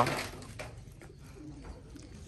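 Faint low bird calls in the background, after a single spoken word right at the start.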